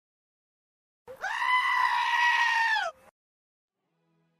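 A single high-pitched held cry lasting about two seconds, starting about a second in, steady in pitch and then dropping just before it stops.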